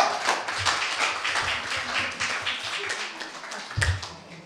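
Audience applauding: dense clapping from many hands that slowly dies down toward the end.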